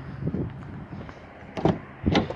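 A 2015 Toyota Yaris driver's door being opened: faint handling sounds, then one sharp latch click about a second and a half in as the door unlatches.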